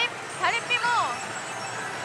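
Steady din of a pachislot parlour, with a short high-pitched voice sound from about half a second to a second in.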